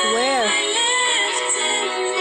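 Pop song playing, with a female voice singing a note that bends up and down in the first half-second over the accompaniment.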